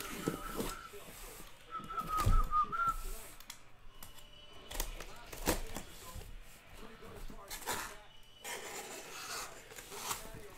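A taped cardboard shipping case being opened by hand: scrapes, rips and knocks of the cardboard. A short wavering whistle-like tone sounds in the first three seconds.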